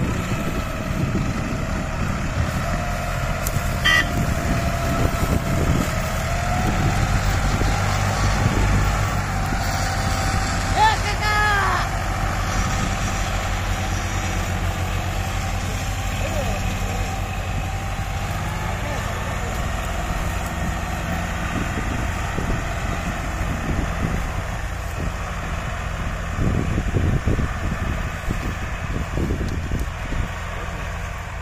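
Diesel tractor engines of a New Holland and a John Deere working hard together to haul a heavily loaded sugarcane trolley across a field, a steady heavy rumble throughout. Voices call out over the engines in the first half.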